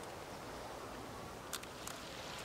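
Faint steady outdoor background hiss, then near the end two quick pairs of short, sharp clicks from a DSLR camera's shutter firing.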